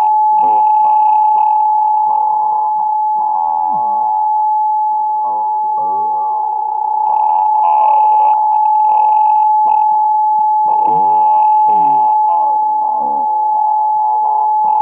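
Experimental noise music: a steady high whistle-like tone with garbled, warbling voice-like fragments that bend up and down in pitch and come and go over it, all thin and narrow like sound over a telephone line or shortwave radio.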